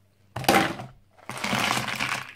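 Ice cubes tipped from a plastic cup into a ceramic bowl of water, clattering and splashing in two pours, the first about a third of a second in and the second lasting about a second near the end.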